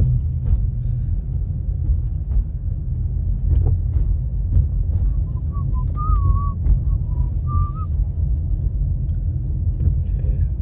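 Steady low road and engine rumble heard inside a moving car's cabin, with a few faint knocks. About halfway through comes a short, wavering whistle that lasts a couple of seconds.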